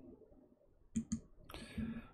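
Two quick, sharp clicks about a second in, then a brief low voice sound just before speech begins.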